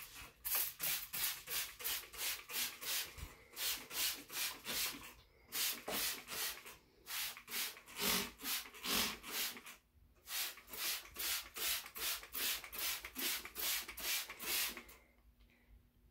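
Hand trigger spray bottle squeezed over and over, each squeeze a short hissing spritz, about two a second in runs with a few brief pauses.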